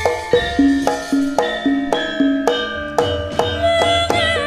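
Javanese gamelan playing an instrumental passage: struck metallophones and kettle gongs ringing at about four notes a second over kendang drumming.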